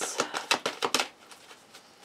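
Tarot cards being shuffled by hand: a fast run of light card clicks, about ten a second, that stops about a second in.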